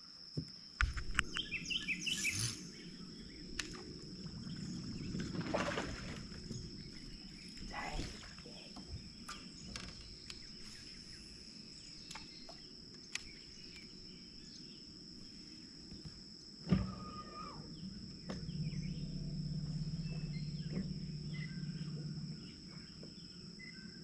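Steady high-pitched drone of insects with occasional bird chirps over a quiet lakeside background. There are scattered small clicks in the first few seconds, then a sudden loud thump about 17 seconds in, followed by a low steady hum for about four seconds.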